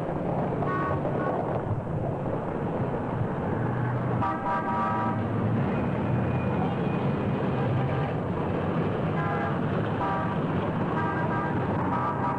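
Dense city street traffic noise with car horns honking several times, in short blasts a few seconds apart, the longest lasting about a second.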